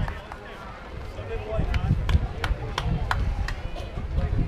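Distant voices from the field over a steady low rumble, with a quick run of about six sharp hand claps in the second half.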